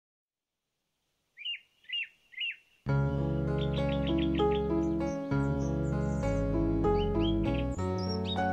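Three short bird chirps, then from about three seconds in, gentle music of sustained chords over a low bass starts, with more bird chirping, including a quick run of chirps, mixed over it.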